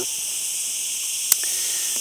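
Chorus of cicadas in a tree, a steady high-pitched buzzing drone. A single sharp click sounds about a second and a half in.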